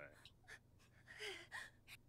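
A faint, breathy gasp about a second in, against near silence.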